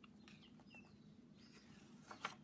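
Near silence: room tone with a faint steady hum, and the soft rustle of a book page starting to be turned near the end.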